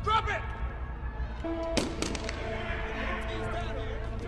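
Movie action-scene soundtrack: a brief shout at the start, a low steady drone of tense score, and a single sharp knock or thud a little under two seconds in.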